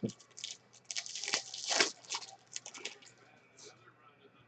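Foil wrapper of a baseball card pack being torn open and crinkled, a run of crackling rips over the first three seconds.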